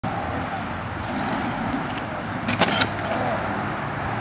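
Steady hum of road traffic. About two and a half seconds in comes a short, loud clatter as a manual wheelchair tips over with its rider onto the asphalt.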